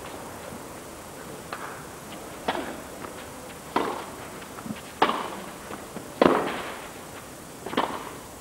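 Tennis ball struck by rackets in a rally on a clay court: a series of sharp hits about a second and a quarter apart, each ringing briefly, the loudest about six seconds in.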